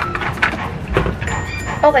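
Metal straw pushed through the sealed plastic lid of a cold-drink cup: scattered scraping clicks and crackles of plastic, with a dull thump about a second in.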